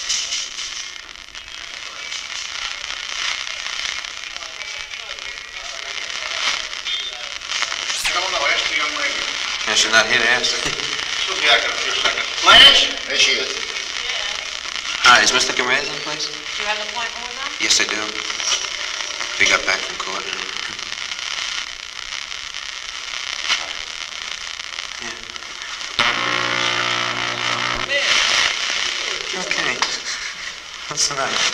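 Covert body-transmitter recording: a steady loud hiss with crackle, through which muffled, unintelligible voices come from about eight seconds in.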